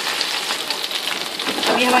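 Beef-mince gola kababs shallow-frying in oil in a non-stick pan, a steady sizzle with fine crackling.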